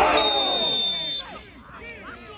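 Referee's whistle blown once, a steady shrill note lasting about a second, stopping play for a foul. It is heard over spectators and players shouting in appeal, which die down as the whistle ends.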